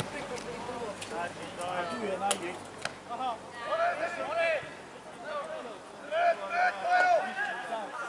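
Voices shouting and calling out during an amateur football match, no clear words, with a few short sharp knocks in the first three seconds.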